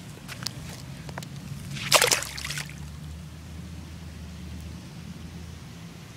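A few faint clicks, then about two seconds in a single splash as a released peacock bass goes back into shallow lake water.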